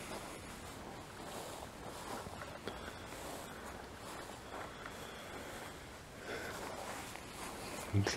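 Faint footsteps on dry grass, with soft crunching and a few light clicks over a quiet outdoor hush.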